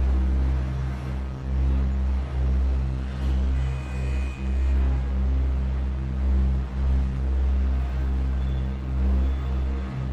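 Dark ambient synth music: a deep bass drone that swells and dips about once a second under sustained low tones, with a faint high tone about four seconds in.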